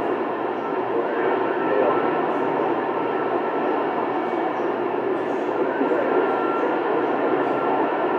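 CB radio receiver hissing with steady band noise and static on an open skip channel, no strong station coming in, with faint garbled distant voices and a thin steady whistle buried in the hiss.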